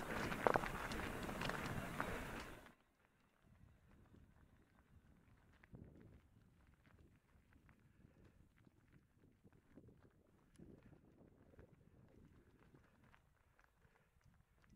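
Loud rushing of wind on the microphone for the first two or three seconds, cutting off suddenly. After that, faint irregular crunching and clicking of mountain-bike tyres rolling over loose gravel and rocks.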